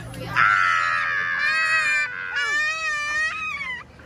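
A child's long, high-pitched scream of pretend fright. It is held for over a second and a half, then followed by a second long, wavering scream.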